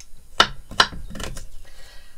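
Kitchen knife chopping garlic cloves on a wooden chopping board: three sharp knocks of the blade on the board, a little under half a second apart.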